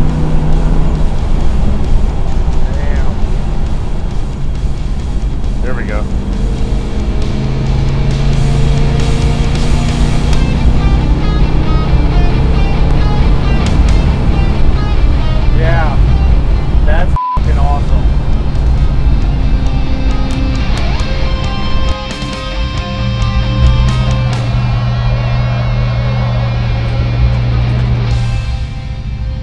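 Background music laid over the 1970 Dodge Coronet R/T's 440 V8 running under way on the road, with a brief break in the sound partway through.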